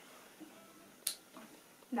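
A short pause with quiet room tone, broken by one brief sharp click about a second in.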